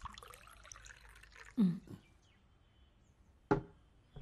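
Orange drink poured from a plastic bottle into a glass, a trickling pour over the first second and a half. Then comes a short low sound, and a single sharp knock near the end.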